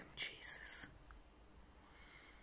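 A woman whispering a few soft, breathy words in the first second, then faint room tone.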